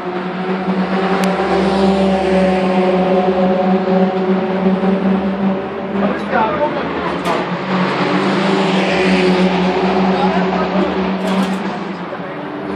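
A car's engine running at a steady, unchanging pitch as it comes along the circuit's straight, growing louder over the first couple of seconds. Brief spectator voices are heard about halfway through and near the end.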